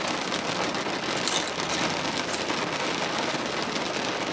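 Steady rain falling on the roof and windows of a car, heard from inside the cabin, with a few brief crisp crackles on top.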